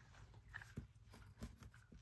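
Near silence: room tone with a few faint soft ticks, about a second apart.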